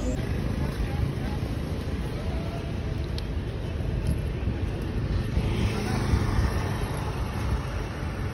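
Steady outdoor road-traffic noise with a low, uneven rumble, and faint voices.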